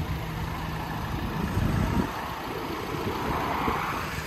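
A vehicle engine running steadily with a low rumble, a faint steady hum in the first second or so and a swell of noise near the end.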